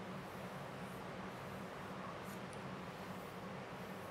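Plastic squeegee rubbed over a vinyl decal on a flat table top, a few faint short scrapes over a steady low room hum.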